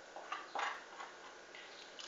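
A few faint light clicks and scrapes of a metal spoon against a small glass bowl as a spoonful is scooped out and tipped into flour.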